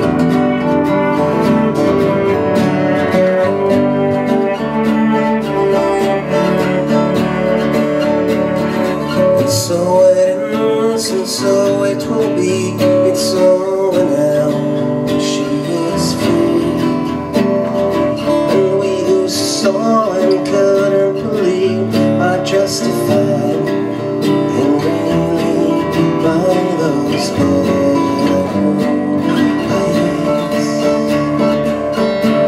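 Live acoustic band playing: two acoustic guitars strummed steadily, with a keyboard.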